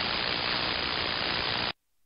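Steady hiss of 11-meter band static through an SDR transceiver's receive audio, heard with no station talking. It cuts off abruptly near the end as the receive audio is muted.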